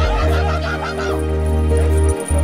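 Harnessed sled dogs (huskies) yelping and howling in short, wavering calls, eager to run at the start line, over background music with a steady held bass.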